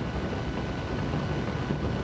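A steady low rumble of background noise, with no distinct strokes or clicks.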